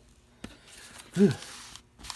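A man's breathy "whew", falling in pitch, at the cost of air dryer pellets, over a soft rustle of glossy flyer paper being handled, with a sharp click about half a second in.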